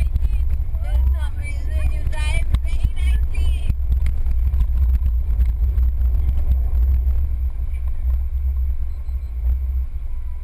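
Low, steady engine and road rumble of a car heard from inside the cabin during an autocross run. Laughing voices are heard over it in the first few seconds.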